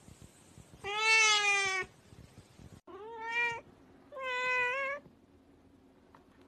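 Domestic cat meowing three times: a long, loud meow about a second in, a shorter one rising in pitch around three seconds, and a third just after four seconds.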